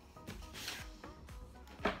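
Background music, with paper packaging rustling as a cardboard box is torn open and unpacked. There is a sharp rustle near the end.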